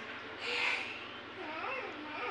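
A young child's high, wordless voice: a breathy sound about half a second in, then a few short sliding calls in the second half.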